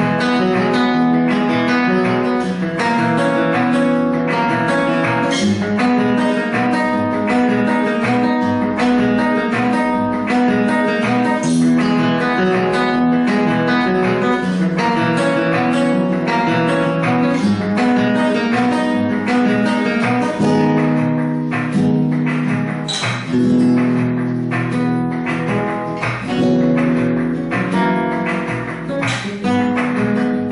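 Flamenco guitar playing a rumba: strummed chords in a steady, even rhythm, with melody notes picked over them.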